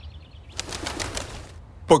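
Pigeon's wings flapping in a quick flutter lasting about a second.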